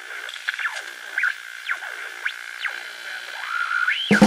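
An old valve radio being tuned between stations: a steady whistle with whines that swoop up and down again and again as the dial turns.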